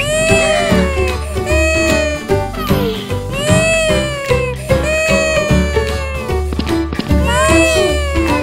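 A cartoon baby's wailing cry, voiced repeatedly as long falling wails about five times, over background music.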